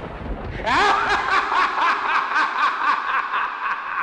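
A low thunder rumble dies away, and under a second in a drawn-out laugh begins: a run of quick, evenly spaced 'ha' pulses, about five a second, that carries on to the end, a horror-style laugh laid over the lightning logo.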